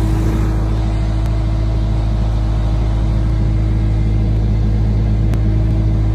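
Skid-steer loader engine running steadily close by, a constant low hum with no change in speed.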